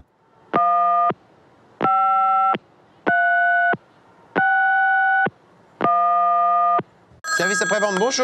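Telephone line tones heard through a phone earpiece: five long electronic beeps, each under a second, spaced a little over a second apart and slightly different in pitch. A voice starts near the end.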